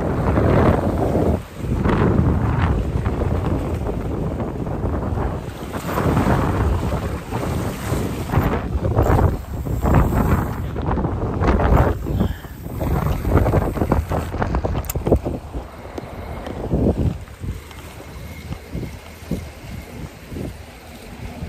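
Wind buffeting the microphone in uneven gusts, a rumbling rush that eases off near the end.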